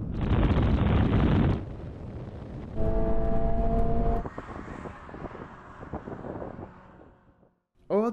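Toyota sports cars' four-cylinder engines at full throttle in a rolling drag race: first a loud rush of engine and wind noise, then a single engine note that climbs slightly in pitch heard inside the cabin, which then dies away.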